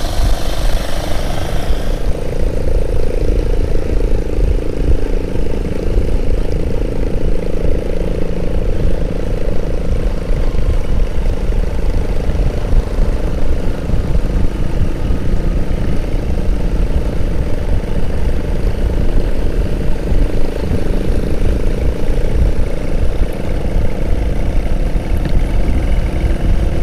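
Motorcycle engine running steadily while riding along at a constant speed, with wind rushing over the microphone.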